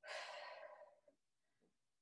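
A woman breathing out hard, one exhale of just under a second that fades away, from the effort of dumbbell curls; then near silence.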